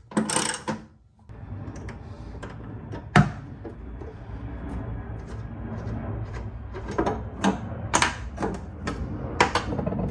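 Ratchet wrench with a T40 Torx socket clicking as a bed tie-down anchor bolt is backed out, then metal clicks and clinks as the loosened bolt and anchor are handled. A sharp click about three seconds in, and several more near the end, over a steady low rumble.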